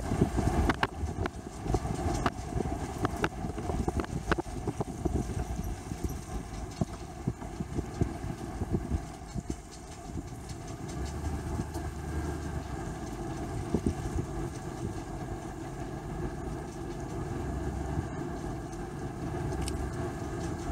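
A vehicle's engine idling with a steady low rumble. Many sharp crackles in the first few seconds, like gravel under slowly rolling tyres, then die away and leave the even idle.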